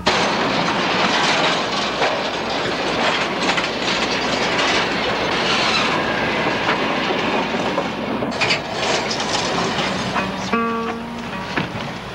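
A train running, a loud steady rushing noise that cuts in abruptly. About ten seconds in it gives way to a few plucked guitar notes.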